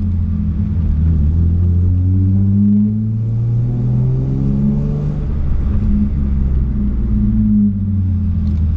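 BMW 328i E36's 2.8-litre straight-six running through a stainless exhaust with a 6-into-2 header, heard from inside the cabin while accelerating. The engine note climbs in pitch, breaks off briefly about three seconds in, then climbs again.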